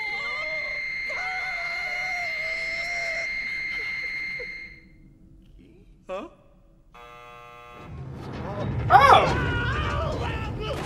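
Cartoon soundtrack: a steady electronic telephone ring with voices over it for about five seconds, then a short buzzing tone about seven seconds in, followed by loud shouting near the end.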